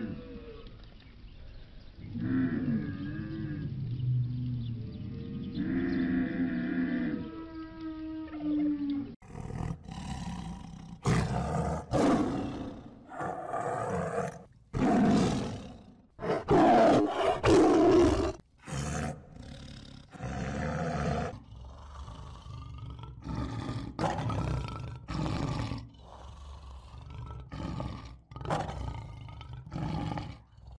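A dromedary camel groaning and bellowing in long, pitched calls that slide up and down. About nine seconds in the sound changes suddenly to leopards growling and roaring, a run of harsh, rough calls with short gaps between them.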